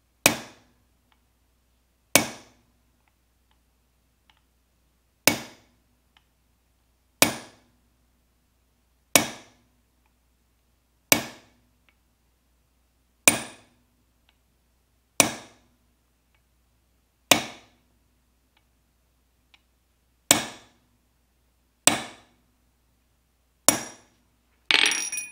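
Hammer striking a metal punch held on a brass knife-guard blank on an anvil: twelve sharp metallic strikes roughly two seconds apart, each ringing briefly. The punching mashes the brass in around the tang slot to narrow it for a tight fit on the tang.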